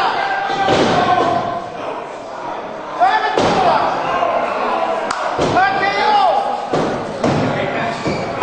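Wrestlers' bodies hitting the ring mat, several heavy slams and thuds, the loudest about three seconds in, among shouting voices.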